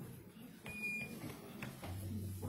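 Quiet hall noise between songs: faint low rustling and movement with a couple of soft clicks. A short, steady, high electronic beep is heard about two-thirds of a second in and lasts about half a second.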